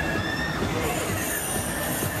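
Polyp fairground ride spinning, its machinery giving a thin, steady squeal over a dense rumble; about a second in, a high hiss joins it.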